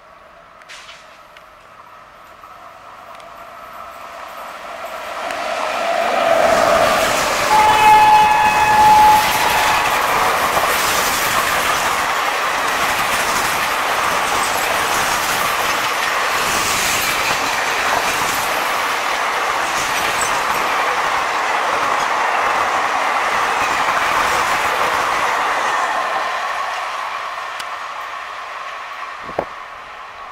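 Indian Railways WAP-7 electric locomotive and its long rake of passenger coaches passing at speed. The train rumbles in and sounds one horn blast of about two seconds, a few seconds in. Then come the steady rush and wheel clatter of the coaches going by, which fade near the end.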